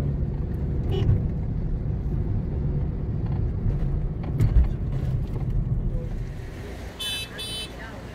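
Car cabin noise while driving: steady low engine and tyre rumble on the road, fading near the end. Two short high beeps sound close together just before the end.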